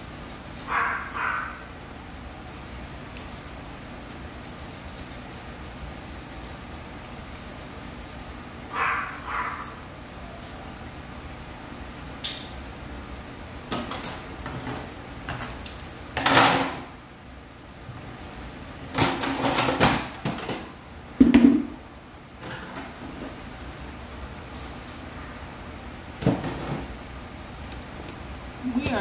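Intermittent knocks and bumps from handling on a grooming table and its tools, with a few louder sharp bumps past the middle.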